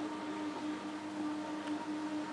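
A steady low machine hum over an even hiss, with a few faint ticks.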